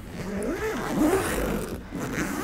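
Zip being pulled open along the side of a lightweight wheeled cabin suitcase: one continuous rasping run.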